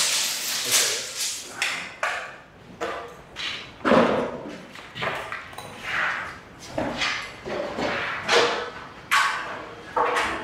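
Plasterboard being measured and cut on a stack of sheets: a tape measure, utility knife and straightedge give a string of irregular taps, knocks and scrapes, about one a second.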